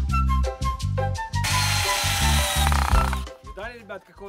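Background music with a strong bass and a plucked, bouncy melody. About a second and a half in, a tool working wood cuts in over it with a steady hiss for about a second and a half.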